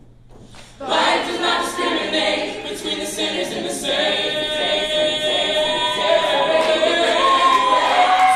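Mixed-voice a cappella group singing with no instruments: after a brief quiet pause, the full group comes in loudly about a second in and holds sustained chords.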